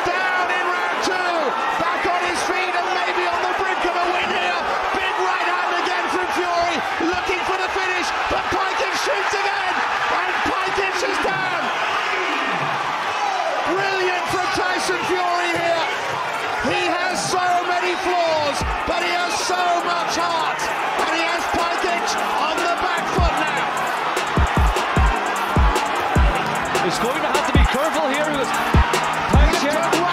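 Arena crowd of many voices shouting and cheering at once, with no single voice standing out. About two-thirds of the way through, a deep thumping music beat comes in under the crowd and grows stronger toward the end.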